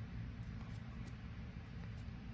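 Faint handling noise of a trading card in a clear plastic sleeve: small scratchy clicks and rustles from the fingers, over a low steady hum.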